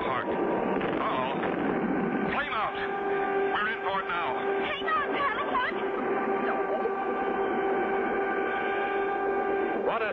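Cartoon soundtrack with no dialogue: a steady held tone enters about two and a half seconds in, under repeated swooping, wavering sounds that rise and fall.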